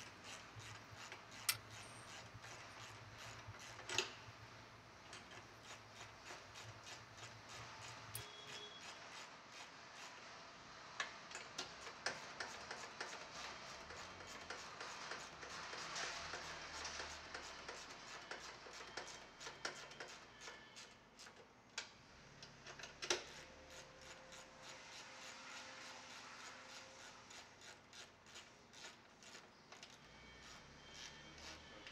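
Ratcheting 9/16 socket wrench clicking in quick runs as 3/8 bolts are tightened to fix a light-fixture arm to a metal pole, with a few sharper metal knocks among the clicks.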